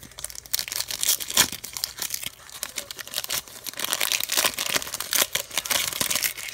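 Foil Pokémon TCG booster pack wrapper being torn open and crinkled by hand, a dense run of crackling rustles with a louder crackle about a second and a half in.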